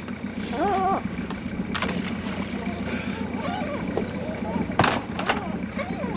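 Small fishing boat's engine running steadily at idle, with a couple of sharp knocks, about two seconds and five seconds in.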